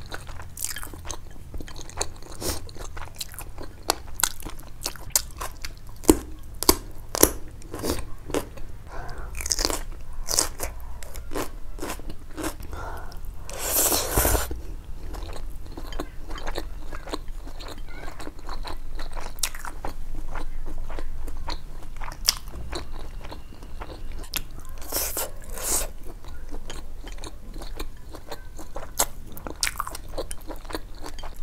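Close-miked eating: crisp crunching and wet chewing of fried noodles and raw cucumber slices, in many short bites, with a couple of longer, noisier mouthfuls, one about halfway through and one late on.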